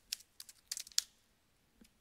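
Computer keyboard keystrokes: a few separate clicks, the last and sharpest about a second in.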